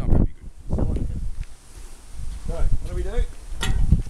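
A man's voice in two short stretches of speech, over a steady low rumble on the microphone from outdoor wind and handling of the camera.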